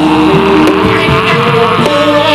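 Live Javanese jaran kepang accompaniment: a held melody line stepping between notes over frequent drum strokes.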